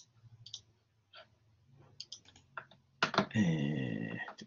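Scattered computer mouse and keyboard clicks over a faint low hum. About three seconds in, a much louder sound with a sliding pitch lasts about a second.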